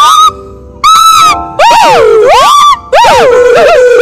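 A gibbon calling: loud, whooping notes that slide up and down in pitch, in repeated bouts separated by short pauses.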